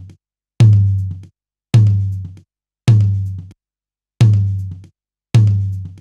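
Recorded tom drum played back on a loop, struck five times a little over a second apart, each hit a sharp attack followed by a deep ringing tone that dies away. The low end around 100 Hz is being boosted with an API-style EQ for punch.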